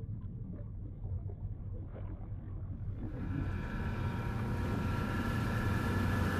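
Steady low engine rumble that grows louder and brighter about halfway through, with a steady whine above it.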